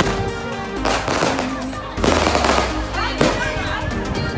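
Firecrackers going off in rapid crackling bursts, three of them, over background music.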